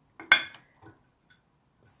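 Chopsticks clinking against a ceramic plate as they try to pick up dried beans: one sharp, ringing clink about a third of a second in, then a couple of faint taps.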